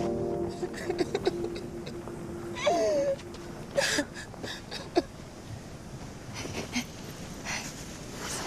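A woman sobbing, with a wavering wail about three seconds in and several sharp, gasping sobs after it. A held music note dies away in the first few seconds.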